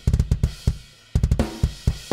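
Drum kit playing a fast pattern of kick, snare and cymbal hits, with a brief pause a little after half a second in before the hits resume.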